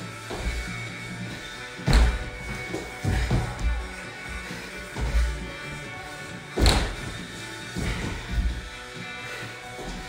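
Music playing throughout, with a thud from a person's body and feet hitting a laminate wood floor every second or two as he drops down and jumps back up doing burpees; the heaviest thuds come about two seconds in and again past six seconds.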